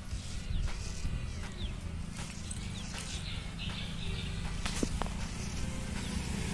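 Straight razor scraping hair off a wet scalp in short strokes during a head shave, faint over a low steady rumble.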